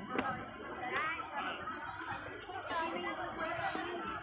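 People chattering, several voices talking at once, with a short sharp click just after the start.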